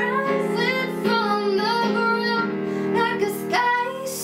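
A young woman singing a pop melody with the notes bending between held pitches, over sustained keyboard chords.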